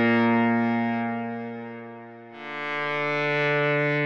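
Software synth preset "ST Oresund" for u-he Zebra HZ, a synthesized solo viola with bow noise and filtered reverb, playing long sustained notes. One note fades away, and a new note starts about two and a half seconds in.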